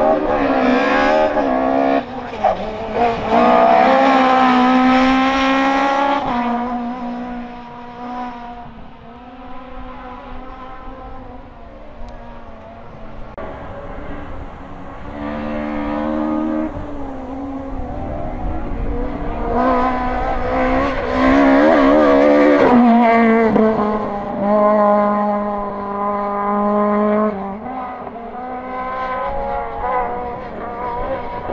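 Rally car engine at full throttle, revving up in rising runs through the gears and dropping between them. It is loudest about 3 to 6 seconds in and again around 20 to 23 seconds in, and fainter in between.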